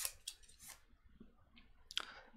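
Playing cards being handled and fanned out by hand, giving a few faint, short clicks and rustles as the card edges slide and tap together.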